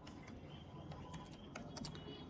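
Computer keyboard typing: a quick run of faint keystroke clicks as a word is typed, bunching up near the end.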